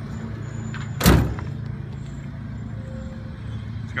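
A single loud slam about a second in, over a steady low hum.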